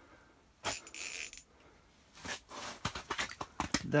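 A large fish, just landed, flopping on the ice: a short scuff about a second in, then a quick irregular run of sharp slaps and clicks over the last two seconds.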